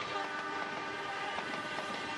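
Diesel-hauled passenger train passing close by, its coaches rolling past with a steady rumble. A long, held horn note fades out under it.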